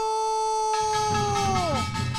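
A lead singer's voice holding one long note of a Korean folk weaving song, the pitch sliding down as it trails off near the end. Hand claps and a low drumming come in underneath about a second in.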